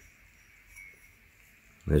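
Near silence with one faint, brief soft sound a little under a second in. A man starts speaking near the end.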